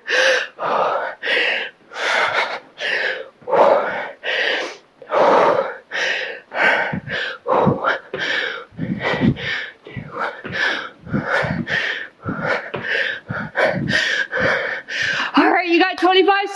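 A woman breathing hard in short, forceful exhalations and gasps while doing lunges and frog jumps. A few dull thuds of feet landing come around the middle of the stretch.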